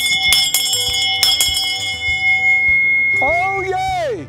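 Town crier's brass handbell rung in several quick strokes in the first second and a half, its ringing fading out by about three seconds in. Near the end, a man's loud, long shouted call.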